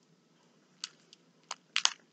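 A few light, sharp clicks: one a little under a second in, one at about a second and a half, then two close together near the end.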